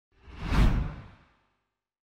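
Whoosh sound effect for an animated channel-logo intro: a single swell that builds for about half a second and fades out within the first second and a bit.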